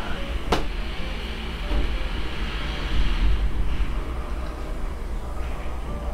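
A motorcycle going by, its engine a steady low rumble that swells a couple of seconds in, with one sharp click about half a second in.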